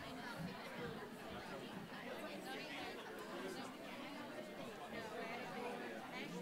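Congregation chatting and greeting one another, many voices talking over each other at once.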